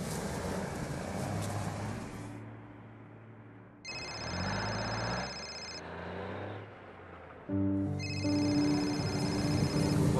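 Mobile phone ringing with an incoming call: a high, rapidly pulsing ringtone sounds about four seconds in, stops near six seconds, and starts again near eight seconds, over soft background music.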